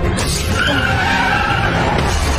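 Vehicle tires squealing in a skid: a wavering high screech that starts about half a second in and lasts just over a second, over a steady low rumble.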